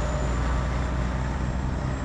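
Heavy truck driving by: a steady low engine drone with road noise.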